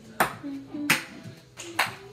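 Ping pong ball bouncing on a hard wooden floor: a few sharp, unevenly spaced clicks.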